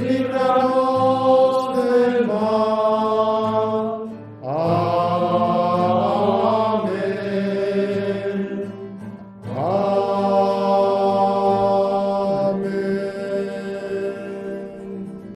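Chant-like devotional singing of long held notes: three sustained phrases, each sliding up into its note, over a steady low drone.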